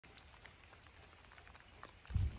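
Faint rain, with scattered small drops ticking now and then over a soft, even hiss.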